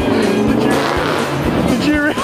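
Amusement arcade din: music and electronic sound effects from the game machines, with a car engine and tyre-squeal sound among them, over voices.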